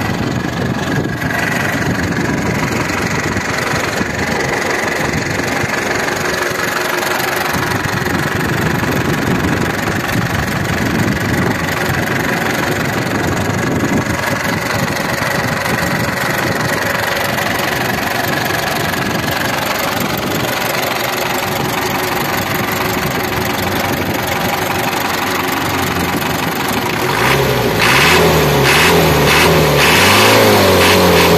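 Toyota Bandeirante's four-cylinder diesel engine idling steadily with the hood open. About two seconds before the end it is revved up and down several times by hand at the injection-pump lever.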